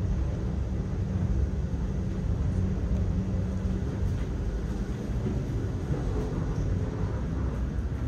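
In-car ride noise of a high-speed traction elevator climbing at about 700 feet per minute: a steady low rumble with a faint hum. It eases slightly near the end as the car slows for the top floor.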